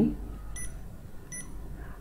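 Holtop Black Cool touchscreen ventilator controller beeping twice, about three quarters of a second apart, as its up-arrow button is pressed. Each short beep confirms a key press stepping the timer's hour setting.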